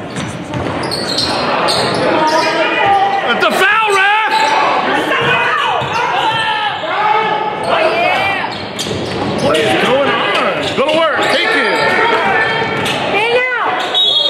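Basketball game on a hardwood gym court: the ball bouncing as it is dribbled, many short high squeaks of sneakers on the floor, and shouts, all echoing in the gym.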